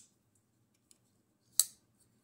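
Folding knife's blade swinging on its freshly oiled ball-bearing pivot: a faint tick about a second in, then one sharp metallic click near the end as the blade snaps shut.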